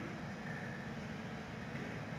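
Steady low background rumble, with a faint, brief high tone about half a second in.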